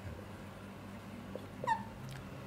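Quiet room with a faint steady low hum. About three-quarters of the way through there is one short, high squeak that slides down in pitch and stops.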